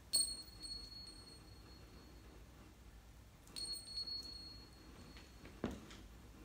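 A small, bright metallic ring like a little bell, struck twice about three and a half seconds apart, each ring dying away over a second or so. A soft thump comes near the end.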